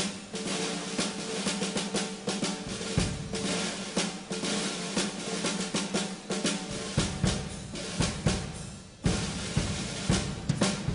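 Traditional New Orleans jazz drum kit playing a solo parade-style beat on snare and bass drum, with snare rolls and rimshots. It breaks off briefly near the end, then comes back in.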